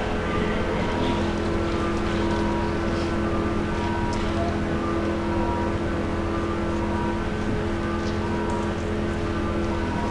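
A steady, unchanging engine hum, like a vehicle engine idling.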